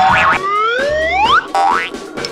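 Cartoon sound effects over background music: a wobbly boing at the start, then a long rising slide-whistle glide, and a quick steep rising glide near the end.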